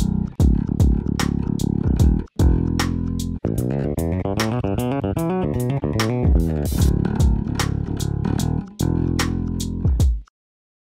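Solo Spector Performer 5-string electric bass with passive pickups, played with a run of sharp, percussive note attacks. A smoother, more sustained phrase comes in the middle, then the percussive attacks return.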